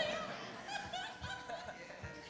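A person laughing: several short, high-pitched laughs in a row.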